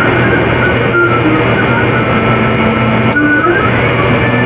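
A loud, dense wall of harsh noise with a steady low hum beneath it. Short whistle-like tones drift through it, one near the middle and another that rises near the end.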